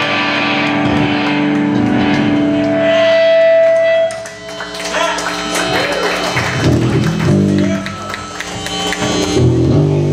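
Amplified electric guitar played live: a held chord rings for about four seconds, then, after a brief dip, loose single picked notes follow.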